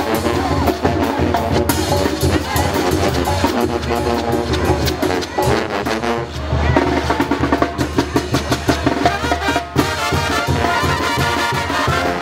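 Oaxacan street brass band playing a lively tune: trombones, trumpets and sousaphones over a steady beat of bass drum and hand cymbals.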